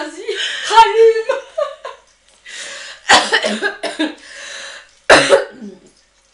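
Women laughing hard and coughing: a pitched laugh in the first second and a half, then breathy bursts of laughter and coughs, with sharp ones about three and five seconds in.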